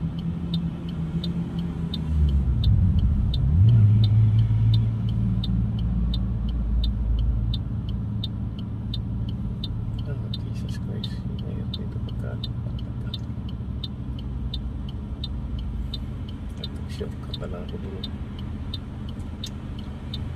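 Car engine idling while stopped, heard from inside the cabin. Its low hum dips and then rises to a steady pitch a few seconds in, with a light, steady ticking about twice a second.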